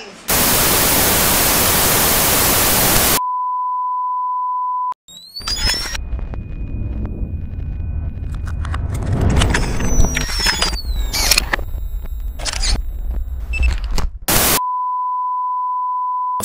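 Edited transition sound effects. First a burst of loud TV-static hiss, then a steady high test-tone beep for about two seconds. Next comes a glitchy logo sting of clicks, hits, sweeping glides and low rumble, and near the end a short burst of static and the test-tone beep returns.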